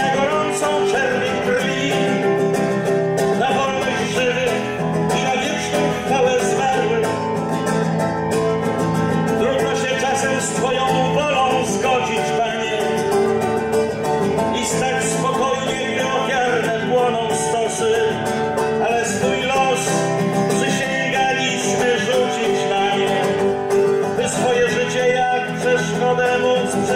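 Nylon-string classical guitar played continuously as a song accompaniment, steady and unbroken.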